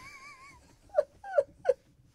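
Three short, high-pitched whimpering yelps, each falling in pitch, coming about one, one and a half, and one and three-quarter seconds in, after a faint wavering high tone dies away.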